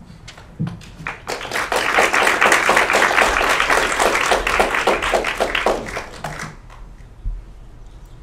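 Audience applauding: the clapping builds up within the first second or so, holds steady for several seconds and dies away about six and a half seconds in. A low thump follows near the end.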